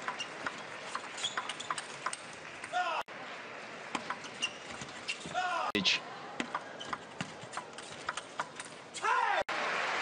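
Table tennis rallies: quick, sharp clicks of the ball off rackets and table, with several short squeaks of players' shoes on the court floor over a crowd background. Near the end the crowd breaks into applause.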